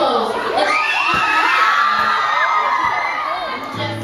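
An audience cheering, many high voices overlapping. A low sustained musical note comes in just before the end.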